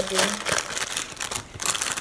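Clear plastic sample packet crinkling as it is handled and opened by hand, a run of irregular crackles.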